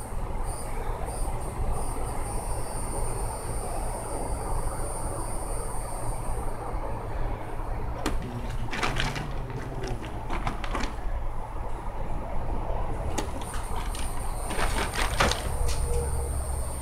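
A steady low rumble with a thin, high insect drone over it. Several short bursts of clicking and rustling come about halfway through and again near the end, from small plastic toy soldiers being handled.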